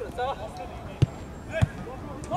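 Two sharp thuds of a football being kicked, about half a second apart, near the middle of the clip, with players' shouts just before.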